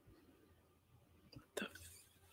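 Near silence: faint room tone, broken near the end by a brief, whisper-like hiss.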